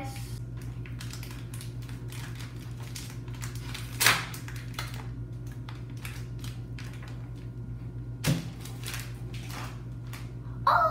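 Foil blind-bag packet crinkling and tearing as it is opened by hand: a steady run of small, quick crackles, with two louder sharp crackles about four seconds in and again about eight seconds in.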